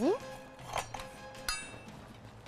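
A single sharp clink of dishware about one and a half seconds in, ringing briefly, over soft background music.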